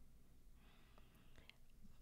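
Near silence: room tone with faint hiss and a couple of faint ticks.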